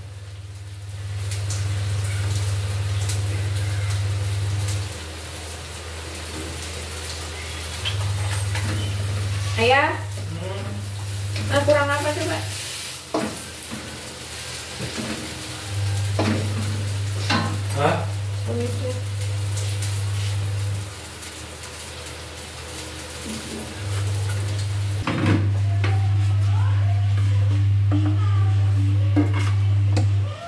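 Bean sprouts and tofu stir-frying in a pan: sizzling, with a utensil stirring against the pan. A loud low hum comes and goes in stretches of a few seconds.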